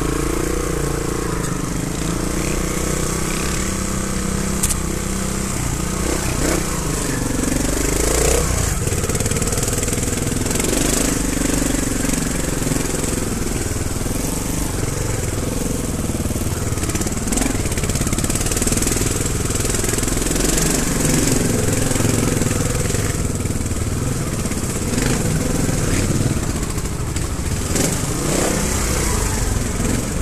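Trials motorcycle engine running at low speed, its revs rising and falling as the bike is ridden.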